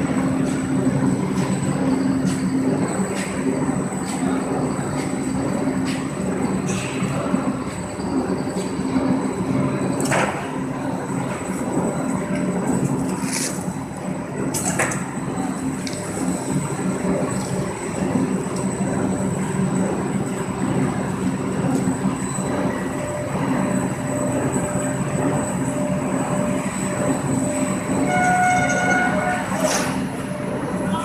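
Corrugated cardboard production line and its stacker running: a steady machinery hum with a thin high whine. A few sharp knocks come about ten seconds in and again around thirteen to fifteen seconds in, and a brief pitched tone sounds near the end.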